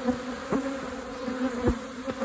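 Honeybee colony buzzing in a steady drone from an opened hive, the agitated, defensive hum of a very strong colony. A couple of bees zip close past, about half a second in and again near the end.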